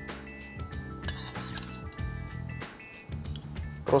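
Background music with a few light clinks of a metal spoon against a ceramic bowl as tomato salad is spooned in.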